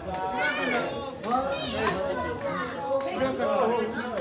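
Mixed chatter of guests in a large hall, with high children's voices among the adult voices.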